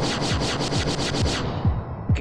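Film background score: fast, even scraping percussion strokes, about seven a second, over deep drum hits that fall in pitch. The scraping stops about a second and a half in.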